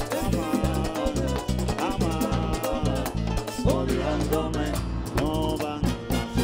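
Live Dominican mambo band playing: a man singing lead into a microphone over tambora, congas and saxophones, with a steady driving beat.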